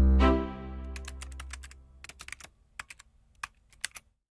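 Logo-sting sound effects: a deep low boom with a ringing pitched tone that fades over about a second and a half, followed by a run of quick, irregular clicks like keyboard typing that lasts to the end.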